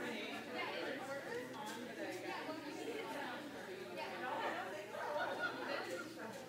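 Indistinct chatter of several people talking at once in a large room, with no single voice standing out.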